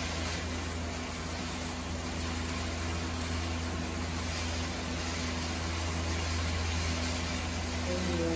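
Chicken strips frying gently in a non-stick pan on a gas stove: a steady, even hiss over a constant low hum.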